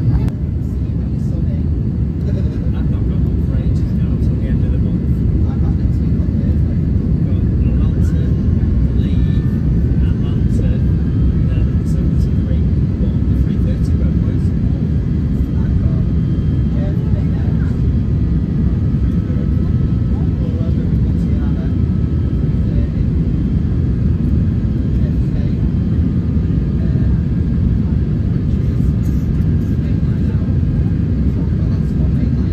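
Steady low roar of an Airbus A350 cabin during climb-out after take-off, the engine and airflow noise heard from a passenger seat, with faint voices in the background.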